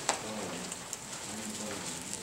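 Bible pages rustling as they are leafed through at the pulpit, with one sharp tap right at the start.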